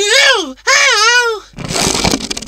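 A cartoon character's wordless voice: two high, wavering vocal calls with pitch sliding up and down, then a noisy, fluttering raspberry blown through the lips near the end.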